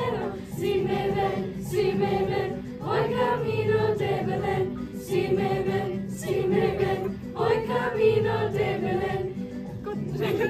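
A youth choir of girls and boys singing a song together, in sung phrases of a second or two with short breaths between them.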